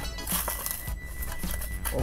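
A Hot Wheels blister pack being torn open by hand: the cardboard backing card rips and the plastic bubble crinkles in irregular bursts, over quiet background music.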